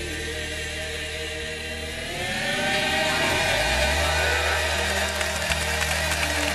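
Live gospel band and choir holding a sustained closing chord over a deep bass note, swelling louder about two seconds in.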